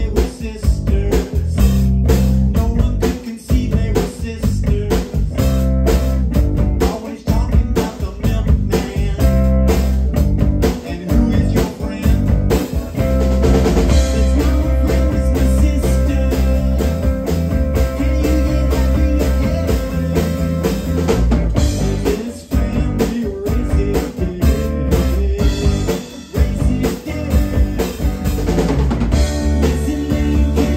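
Live rock band playing: electric guitar, electric bass and drum kit, with a steady driving beat and heavy bass.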